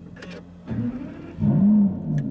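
Aston Martin V12 Vantage S's V12 engine being started: a second or so of starter cranking, then the engine catches with a brief rev flare near the end, the loudest part, that rises and falls.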